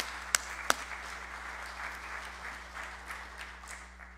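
A church congregation applauding, with a few sharp, close claps standing out in the first second; the applause thins out toward the end.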